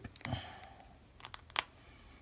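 Faint rustling with a few light clicks from hands handling a strip of electroluminescent light tape and its paper adhesive liner, one click just after the start and a couple more about a second and a half in.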